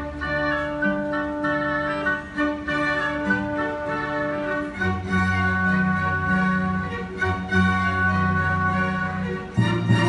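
Live orchestra playing, with bowed strings holding long notes over a moving bass line. A louder full chord comes in just before the end.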